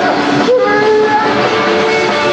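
Psychobilly band recording with no vocal line at this point: held, ringing instrument notes, one of them bending in pitch about half a second in.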